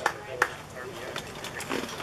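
Two sharp hand claps in the first half second, the end of an evenly spaced run of claps, over faint voices of players and onlookers.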